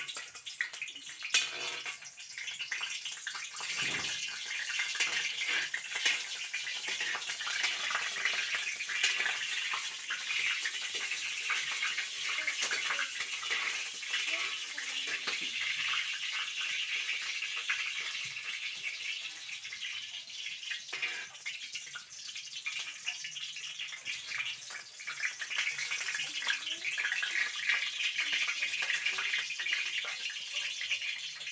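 Chopped garlic sizzling in hot oil in a large wok over a wood fire: a steady frying hiss with fine crackles, the first step of sautéing for pancit.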